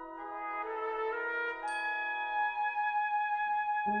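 Brass band playing slow sustained chords: new voices enter one after another, climbing in pitch and growing louder, and a fuller, lower chord comes in right at the end.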